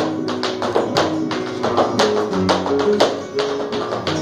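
Flamenco guitar playing under the sharp taps of a dancer's shoe footwork, about three to four strikes a second.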